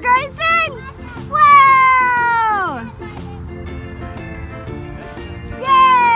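A high voice letting out a few short calls, then two long cries that glide down in pitch, the first about a second and a half in and the second near the end, as the kite comes down. Background music with steady low notes plays underneath.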